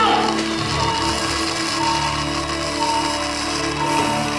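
Background music of sustained steady tones, with a short high tone recurring about once a second.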